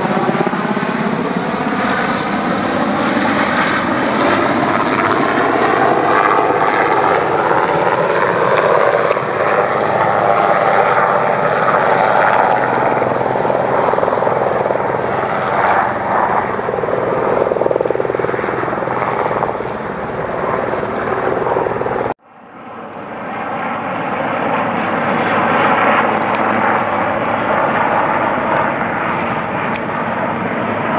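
Sikorsky VH-3D Sea King helicopter flying low overhead: loud, steady rotor and turbine noise, with a falling pitch in the first few seconds as it passes. About two-thirds of the way through, the sound cuts out abruptly and fades back in.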